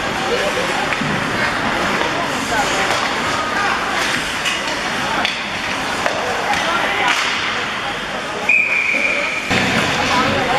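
Ice hockey game sound in an arena: spectators chattering, with scattered knocks of sticks, puck and skates on the ice. Near the end, a referee's whistle is blown once for just under a second.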